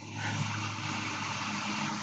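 A steady low mechanical hum with a broad hiss over it, heard through a video-call microphone; it sets in just after the start and holds level.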